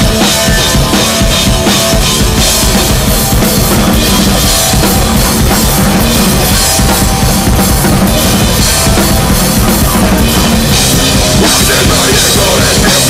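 Live amplified band playing loud: drum kit with kick and snare under distorted electric guitar and electronics, one dense continuous mass of sound with no break.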